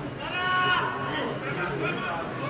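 A single drawn-out shout of about half a second from someone at a football match, a player or a spectator, followed by fainter voices.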